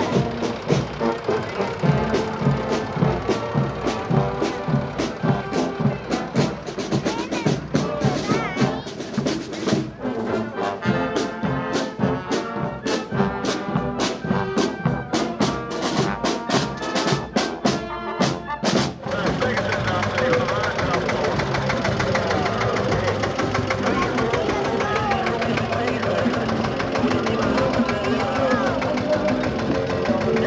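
Marching band playing, with snare drums beating a quick rhythm under brass. About two-thirds of the way through, the sharp drum strokes stop and a smoother, steadier blend of music carries on.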